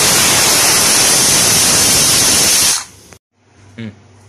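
Aluminium stovetop pressure cooker whistling: its weighted valve releases steam in one loud, steady hiss that cuts off about three seconds in. It is one of the two whistles counted to time the pressure cooking.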